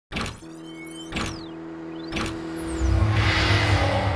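Channel logo sting: three sharp hits about a second apart, each followed by sweeping whooshes, over a held tone, then a swelling rumbling whoosh that builds to the loudest point near the end.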